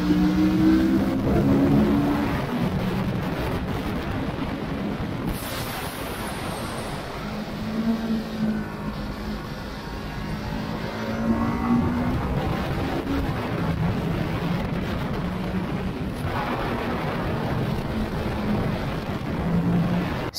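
Kawasaki Ninja 650's 649 cc liquid-cooled parallel-twin engine running hard on track, its note shifting up and down in pitch with the throttle and gear changes, under heavy wind rush on the microphone.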